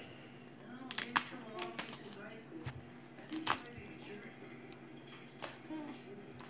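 Handling noise of a disposable diaper being fitted onto a plastic baby doll: paper-and-plastic rustling with a few sharp taps, about one and three and a half seconds in and again near the end.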